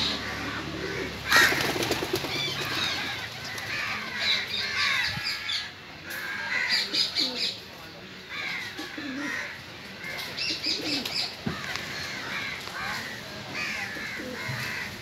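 Birds calling around a flock of pigeons: many short, high calls scattered throughout, with some lower cooing calls. A loud rustle about a second in is the loudest sound.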